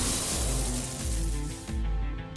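Animated sound effect of a Beyblade bursting apart: a loud rushing hiss that fades away over about a second and a half, over background music with a steady pulsing bass.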